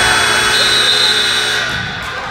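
Gym scoreboard horn sounding one long steady tone lasting almost two seconds, over crowd noise in a large hall.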